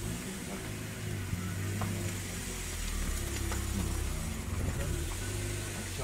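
A motor vehicle engine running with a steady low hum, with faint voices in the background.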